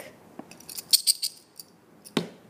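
Toothpicks rattling inside a small hard plastic bottle as it is handled and shaken: a single click, then a quick clatter of clicks in the middle that dies away.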